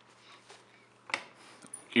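A single short click about a second in, from a hand working the boat lift's blower controller panel, otherwise quiet.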